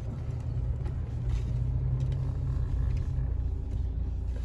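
Low, steady vehicle rumble heard from inside a car's cabin while driving slowly, with a steady low engine hum that drops away about three seconds in.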